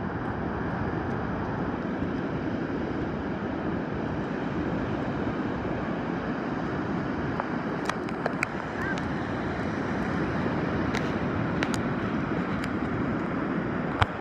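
Steady rush of surf breaking along the shore, mixed with wind on the microphone, with a few light clicks in the second half.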